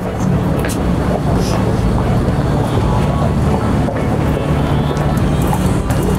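Busy city-street ambience: a loud, steady low rumble with an even wash of noise over it.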